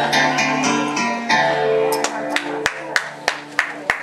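Karaoke backing track with guitar, its final chords ringing out and dying away about two seconds in, followed by a run of sharp, irregular clicks.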